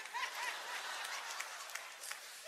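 Audience clapping and laughing, a soft even wash of noise that fades slightly toward the end.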